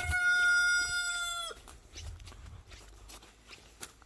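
A rooster crowing: one long held note that ends with a short falling drop about a second and a half in.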